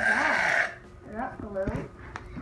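Aerosol can of shaving cream sprayed into a bowl of slime: a short hiss of under a second. A child's brief vocal sounds follow.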